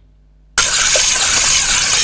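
A loud outro sound effect under the channel's logo card: a sudden hissing rush of noise that cuts in about half a second in and holds steady.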